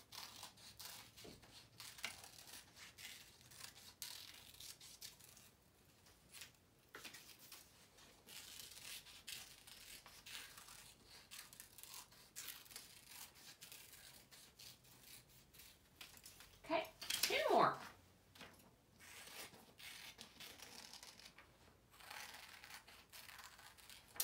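Hand scissors cutting through a sheet of paper: a run of faint, quick snips and paper rustles. A short vocal sound breaks in about two-thirds of the way through.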